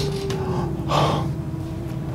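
Two sharp breaths or gasps, at the start and about a second in, over a steady held tone in the background that sinks slowly in pitch.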